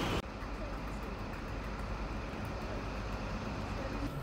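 Steady low rumble of a passenger train heard from inside the carriage.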